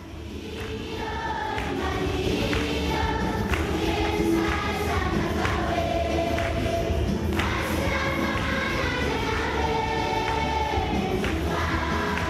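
A large congregation singing a hymn together, many voices in sustained notes, fading in over the first second or two.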